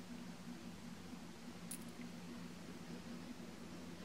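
Quiet room tone with a steady low hum and one faint, brief click about halfway through.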